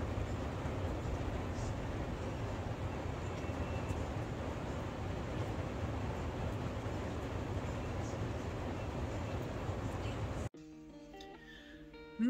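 Rain falling steadily, a dense even hiss that cuts off suddenly about ten and a half seconds in. Quiet background music with held notes follows.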